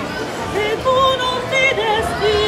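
A woman singing solo in a classical, operatic style with a wide vibrato. She sings a run of short notes that settle into held, wavering tones.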